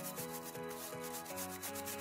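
Small bristle brush scrubbing the fine stainless steel mesh of a pour-over filter cone in quick back-and-forth strokes, a rapid scratchy rasping.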